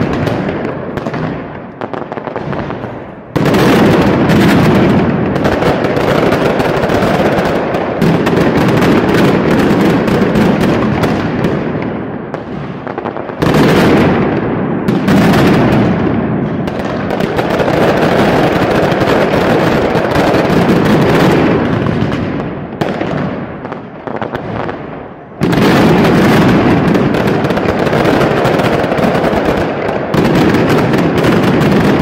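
Mascletà by Pirotecnia Vulcano: dense, unbroken strings of firecrackers (masclets) going off in a continuous rattle of bangs. It thins out three times and surges back abruptly about three, thirteen and twenty-five seconds in.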